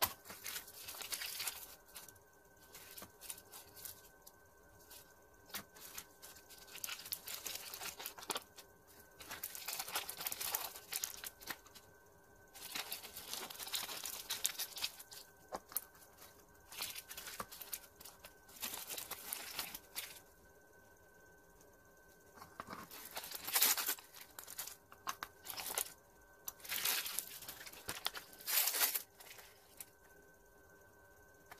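Crinkly plastic wrappers of a toy capsule ball being unwrapped and crumpled by hand, in irregular bursts of rustling with short pauses between; the loudest crinkles come near the end.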